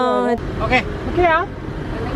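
People talking over a steady low rumble of vehicle noise.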